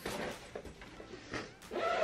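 Rustling and handling noises of clothes and items being pushed into an open fabric suitcase, in a few short bursts.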